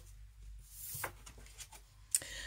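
Faint handling of tarot cards: a soft sliding swish as a card is laid on the tabletop, then a light tap about a second in. A low steady hum sits underneath.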